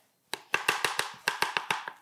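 A quick run of about a dozen light taps: a utensil knocking against a container to get peanut butter off it and into the container.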